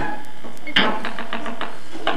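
Free-improvised live band music at a percussive moment: after a sparse opening, a quick run of about six or seven sharp strikes starting about three quarters of a second in.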